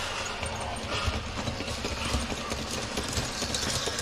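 HO scale model train running on KATO Unitrack: a pulsing low rumble with many light clicks, typical of wheels passing over rail joints, over a steady hiss.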